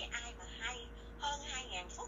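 Speech: a person talking.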